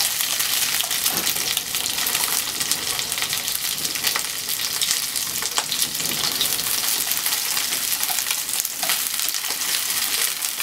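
Chicken pieces sizzling and crackling steadily in hot oil in a nonstick frying pan, stirred and turned with wooden chopsticks.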